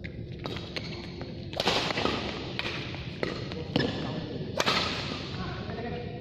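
Badminton rally: rackets striking the shuttlecock in a string of sharp hits, about eight in all, the two loudest about a second and a half in and again three seconds later. The hits echo in a large hall.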